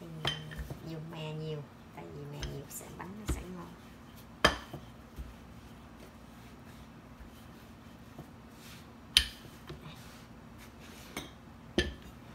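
Sharp knocks of a wooden rolling pin against a plastic cutting board while dough is rolled out, the loudest about four and a half and nine seconds in, with another near the end.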